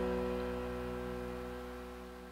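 The last chord of a song ringing out and slowly fading away, several held notes dying down together.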